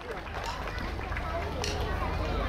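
People's voices outdoors, rising in level, over a steady low rumble, with a sharp click about one and a half seconds in.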